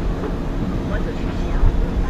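Harbour-side outdoor ambience: a steady low rumble with faint, indistinct voices mixed in.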